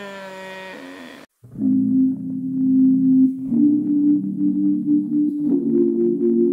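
A drawn-out spoken "oh" with a slightly falling pitch. After a sudden cut about a second in, background music follows: slow, sustained low chords that change about every two seconds.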